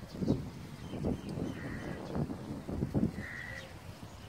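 Crows cawing: about five short, harsh calls spread over a few seconds.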